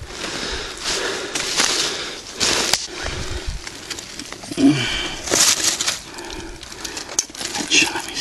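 Rustling and crunching in dry fallen leaves, in several bursts, as someone moves about on the forest floor. A short vocal sound comes about four and a half seconds in.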